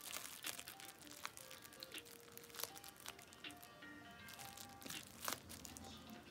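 Bubble wrap crinkling and popping in small, scattered crackles, over faint music with a slow melody of held notes.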